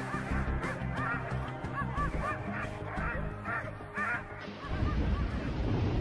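Sled dogs yipping and barking in quick, repeated short calls over background music. About four and a half seconds in, these give way to the low rumble of a rocket launch.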